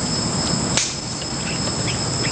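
Insects chirring steadily outdoors, a continuous high drone over a noisy background, with one sharp click a little under a second in.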